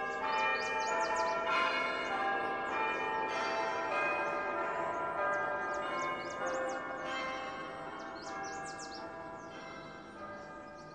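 Church bells pealing, many notes overlapping and ringing on, with birds chirping over them. The sound slowly fades out toward the end.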